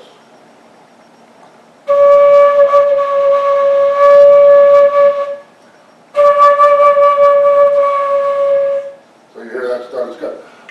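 Silver concert flute sounding one long held note for about three and a half seconds, then the same note again for about three seconds. The notes are played to show what happens to the tone when the flute is crammed against the player's face.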